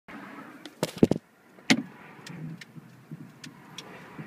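Handling noise of a phone being moved and repositioned inside a car cabin: a cluster of sharp knocks about a second in, another near the middle, then a few fainter clicks.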